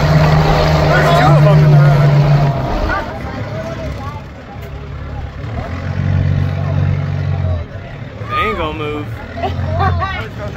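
The engine of a giant 4x4 monster-truck tour vehicle running at low speed, a low drone that is strong for the first two and a half seconds, drops back, then swells again around six to seven seconds and near the end. Passengers' voices are heard over it.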